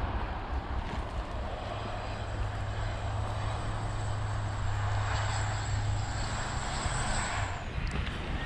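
A steady low engine drone, growing stronger over several seconds, with a faint high whine above it and a noisy hiss. It cuts off shortly before the end.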